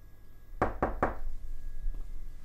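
Three quick knocks on a door, a little over half a second in.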